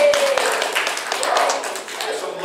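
Scattered hand clapping from an audience, a dense run of sharp claps, with a man's voice under it.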